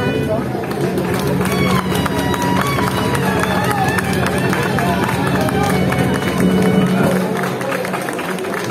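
Street musicians playing live, a guitar among them, with many people's voices mixed over the music from the crowd packed around them.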